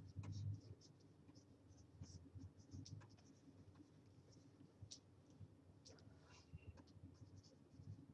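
Faint, irregular scratching of a pen stylus on a graphics tablet as brush strokes are painted, in short scattered strokes.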